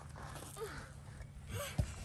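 Faint, short straining sounds from a young child at work, with one sharp low thump near the end.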